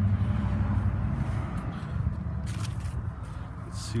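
Low, steady vehicle engine rumble that fades away, with brief rustles of the phone being handled twice near the end.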